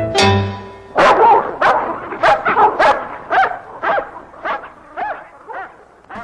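A last chord of a salsa recording cuts off, then a dog barks about ten times, the barks growing fainter until they die away.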